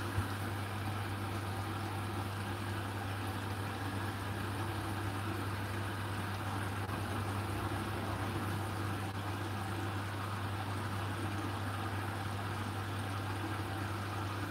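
Hotpoint NSWR843C washing machine's drain pump running with a steady low hum while the drum stands still, pumping water out of the tub.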